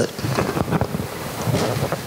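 Handling noise from a handheld microphone as it is passed from one person's hand to another's: a rough rustling and rubbing with small knocks, and no clear speech.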